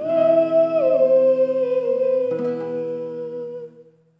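A singer humming the closing note of a song over acoustic guitar, the pitch stepping down about a second in. A last chord sounds a little after two seconds, and everything fades out near the end.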